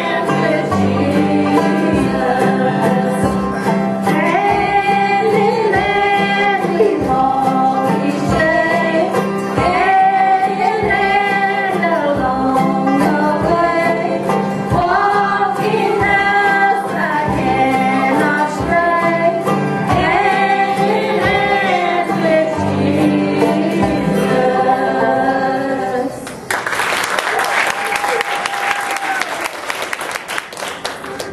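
Women singing a bluegrass gospel song in harmony, backed by acoustic guitar and upright bass. The song ends about 26 seconds in, and applause follows.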